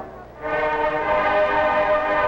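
Marching band brass holding long sustained chords; the sound drops away briefly right at the start, then a new held chord comes in and carries on.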